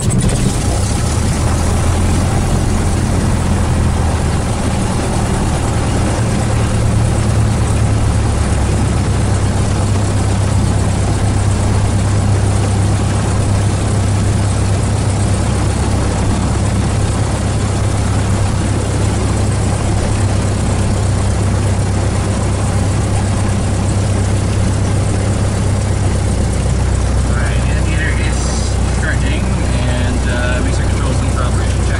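Cessna 172's piston engine and propeller, heard from inside the cockpit, catching right at the start and then running at a steady idle just after start-up.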